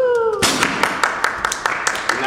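A voice calls out with a falling pitch, then an audience breaks into dense clapping about half a second in.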